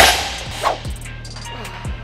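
Loaded barbell with bumper plates hitting the gym floor once as a deadlift rep is set down: a single sharp impact that fades over about half a second. Background music with a bass beat plays underneath.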